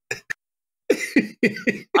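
A man laughing in short, quick bursts, about four a second, after a brief pause near the start.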